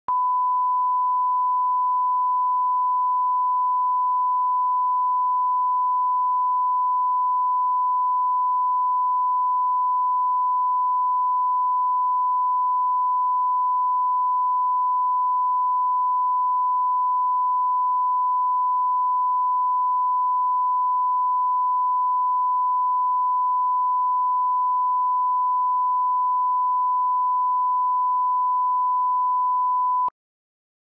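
Continuous 1 kHz line-up test tone, one steady unbroken pitch, played with the colour bars at the head of a broadcast tape as the reference for setting audio levels.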